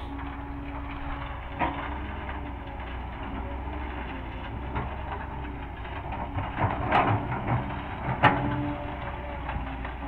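Diesel engine of a nearby excavator running steadily, with a sharp knock about one and a half seconds in and a cluster of louder knocks and clanks around seven to eight seconds.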